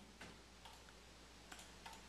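Near silence with a few faint, scattered clicks from a computer keyboard and mouse.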